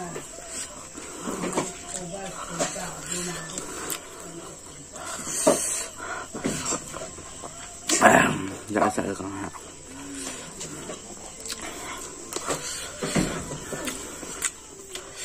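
Close-up eating sounds of a man eating rice with his hand: chewing and wet mouth smacks with irregular sharp clicks. A few brief louder bursts come through, the loudest about eight seconds in.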